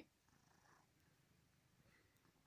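Near silence, with a domestic cat purring very faintly as it sits on a person's back.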